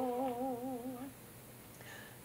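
A single woman's voice holding the last note of a hymn line with steady vibrato, stopping about a second in.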